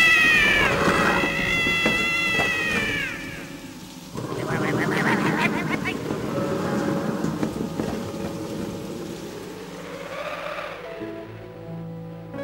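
A cartoon cat's long, drawn-out meow that falls in pitch as it ends about three seconds in. After it comes a noisy stretch without a clear pitch, and soft music starts near the end.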